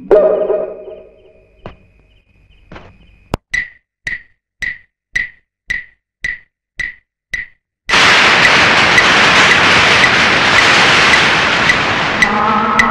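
Film soundtrack effects: a fading note, then a sharp crack and a run of evenly spaced clicks, about two a second. About eight seconds in, a sudden loud, steady rushing noise starts, and the clicks carry on faintly underneath it.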